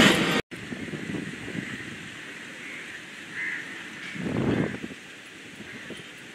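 Music cuts off abruptly about half a second in, leaving steady outdoor background noise that swells briefly about four and a half seconds in.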